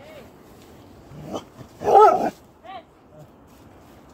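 A dog barking three times, the middle bark, about two seconds in, much the loudest and longest.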